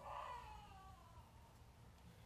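Near silence: a pause in speech with room tone, and a faint voice-like tone that slides downward and fades over the first second.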